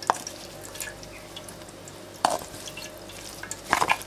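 Blended chili sauce being stirred and pressed through a metal sieve, scraping against the mesh, with liquid dripping into the pan below. A few sharp scrapes stand out, the loudest about two seconds in and again near the end.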